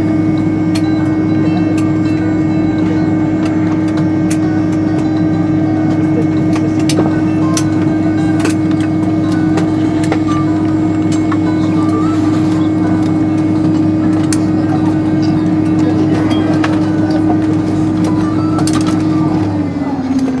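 Fokker 70's rear-mounted Rolls-Royce Tay turbofans idling, heard inside the cabin as a loud, steady hum with one held tone. Near the end the tone starts to fall in pitch as the engines begin to wind down.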